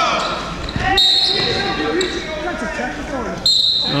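Referee's whistle blown twice, once about a second in and again near the end, with a short steady shrill tone each time, over gym crowd and court noise. The whistle stops play for a technical foul.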